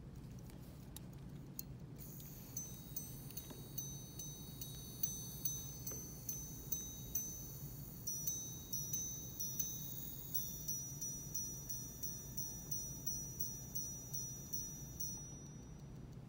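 Audemars Piguet Jules Audemars Tourbillon minute repeater (ref. 25937) striking the time on its gongs: a brisk run of high, ringing chimes at about two strikes a second. It starts about two seconds in and stops shortly before the end.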